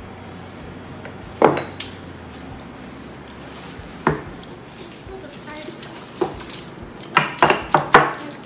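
Scattered sharp clicks and clatter of plates, utensils and crab shells being handled while eating a seafood boil. The loudest comes about a second and a half in, with a quick run of clicks near the end.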